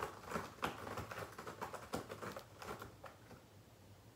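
A cat clawing at a scratching post: a quick, irregular run of faint scratchy rasps that thins out and stops about three seconds in.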